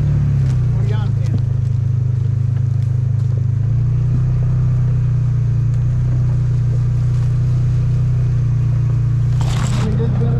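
A small off-road vehicle's engine running steadily as it drives along a grassy trail. The engine note dips slightly near the start and rises a little about four seconds in. A brief louder noise comes near the end.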